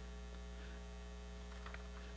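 Steady electrical mains hum from the sound system, a constant low buzz with several evenly spaced overtones.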